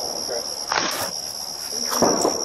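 Crickets trilling steadily on one high, unbroken pitch, picked up by a body camera microphone outdoors at night.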